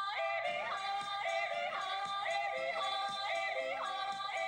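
Cartoon theme song with a yodeling vocal over instrumental accompaniment, the voice leaping up and down in pitch in a short phrase repeated about once a second.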